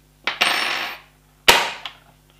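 Spring-powered Wells MB08 bolt-action gel blaster dry-fired to release its cocked spring: one sharp snap with a short ringing tail about one and a half seconds in, after a brief rustling noise.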